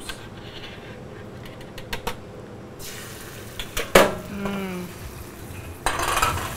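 Stainless steel sauté pan handled on a commercial gas range: light clinks, then a sharp metal clank about four seconds in. A hiss starts about three seconds in and grows louder near the end as mushrooms begin to sizzle in the pan.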